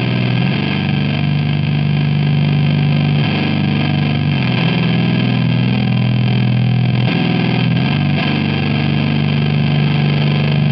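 Electric guitar played through the Audio Surplus OK Doomer, a hefty one-knob fuzz pedal: thick, saturated, disgusting fuzz tone on long held notes that change every few seconds.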